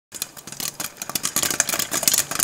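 Popcorn popping: a dense, irregular run of sharp pops and crackles that starts a moment in.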